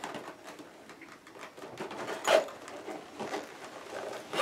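Soft plastic rustling and crinkling as a clear plastic pouch full of small doll accessories is handled, with a short louder rustle about two seconds in.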